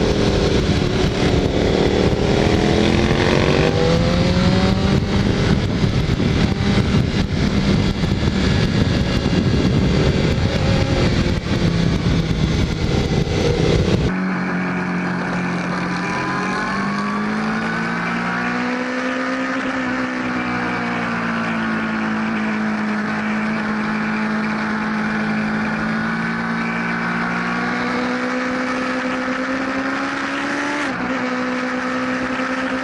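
Sport motorcycle engine under way on a race track, heard from an on-board camera with heavy wind noise on the microphone; the engine note rises and falls gently with the throttle. About halfway through there is a sudden cut to another recording with much less wind and a clearer engine note, still rising and falling.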